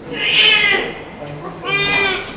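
Newborn baby crying with a suction tube in its mouth during airway clearing after birth. There are two high, wavering cries: the first runs to about a second in, and the second starts near the end.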